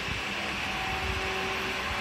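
Steady hum of a swimming-pool pump motor: an even drone with a faint constant whine.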